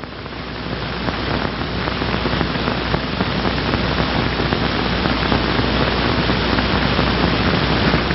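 Steady loud hiss with a faint crackle, like static, from an old 16mm film soundtrack; it swells up over the first second and then holds level.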